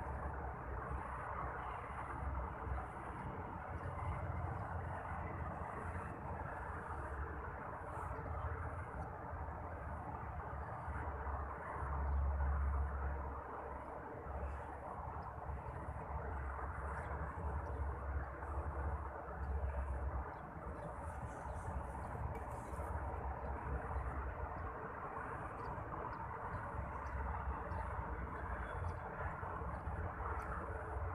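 Steady outdoor background hiss with low rumbling swells of wind on the microphone, loudest about twelve seconds in, and faint high chirps repeating at an even pace throughout.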